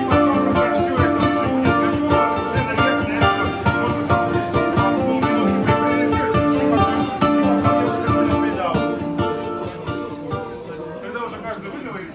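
Jazz played on a ukulele: quick plucked notes and chords over held lower notes, thinning out and fading over the last few seconds.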